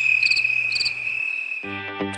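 Crickets chirping at night: a steady high trill with short chirps repeating a little under twice a second. Music comes in near the end.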